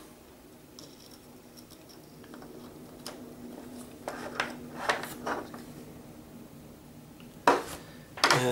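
Soldering iron tip scraping and clicking lightly against a small circuit board and its wire ends while solder joints are melted to free the wires: a few scattered clicks over a faint steady hum, then one loud sharp knock near the end.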